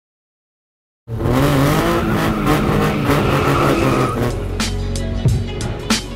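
Car sound over music: an engine running and tyres squealing, cutting in abruptly after a second of silence.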